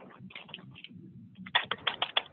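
Computer keyboard typing: a string of separate key clicks, softer at first, then a quick run of louder, sharper keystrokes in the last half second as a short terminal command is typed and entered.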